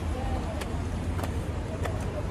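Steady low rumble of city street traffic, with faint voices in the background and a few light clicks about every half second.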